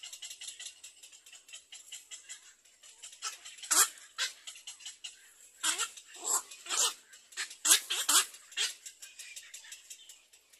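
Harsh, barking bird calls at a nesting tree, about eight loud ones in the second half, over a fast high ticking.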